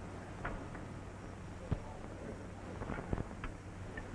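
Low background hiss and hum of an old optical film soundtrack, with a few faint scattered clicks.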